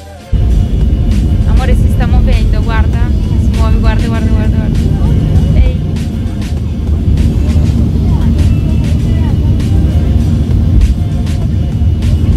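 Airliner cabin noise: a loud, steady low rumble of engines and airflow heard from inside the passenger cabin while the plane is near the ground, starting abruptly.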